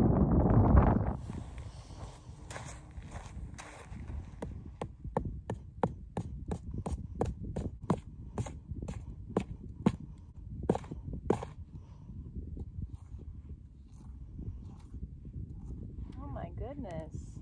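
A hammer knocking into the salt crust and sand while digging for selenite crystals: a steady run of sharp knocks, about two a second, that stops about three-quarters of the way through. A loud rush of noise fills the first second.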